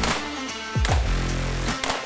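Electronic background music with heavy sustained bass notes and a sharp hit a little under once a second.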